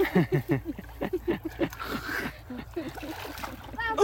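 Several people talking quickly over one another, with splashing and sloshing of muddy water as someone digs by hand in the mud of a shallow pond.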